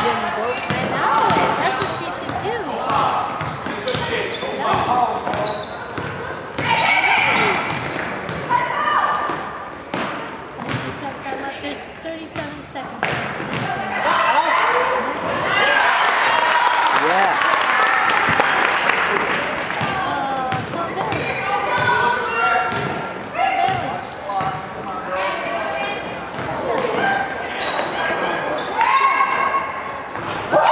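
Live girls' basketball game in a large gym: a basketball bounces repeatedly on the hardwood court amid scattered shouts from players and spectators, all echoing in the hall. The noise swells for a few seconds about midway through.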